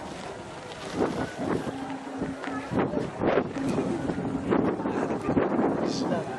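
Wind buffeting the microphone in uneven gusts, with people's voices faintly in the background.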